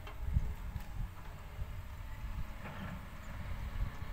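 Wind buffeting the microphone in an irregular low rumble.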